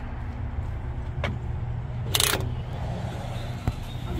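A glass entrance door being pushed open, with a sharp click about a second in and a bright metallic rattle about two seconds in, over a low steady background rumble.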